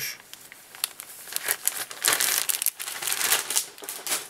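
Dry crinkling and rustling in irregular bursts as a golden pheasant skin is handled to pick out a feather.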